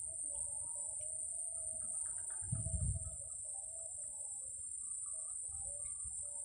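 Steady high-pitched insect chirring from the grassy swamp vegetation, with faint wavering calls lower down and a brief low rumble about two and a half seconds in.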